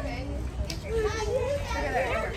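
Children's voices talking and calling out indistinctly, over a steady low rumble.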